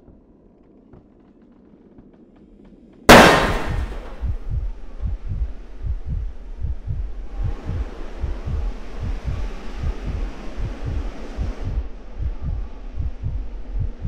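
Horror-film sound design: after a quiet start, a sudden loud jump-scare hit about three seconds in that rings off over a second. Then a low heartbeat-like pulse, about two beats a second, with a hiss that comes in partway through and cuts off near the end.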